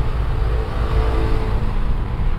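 Steady low background rumble with a faint hum.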